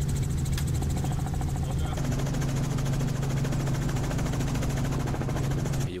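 Helicopter in flight heard from inside the cockpit: a steady engine and rotor drone with a fine, even pulsing, cutting off suddenly near the end.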